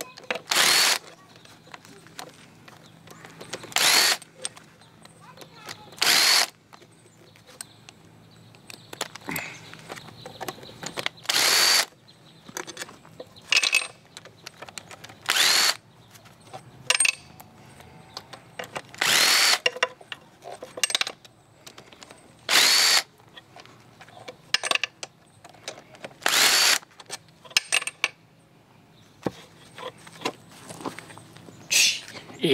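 Power ratchet (a 'zipper gun') running in about a dozen short bursts, each under a second, with pauses between, as it spins out the cylinder head bolts of an outboard motor. Small metal clicks come between the bursts.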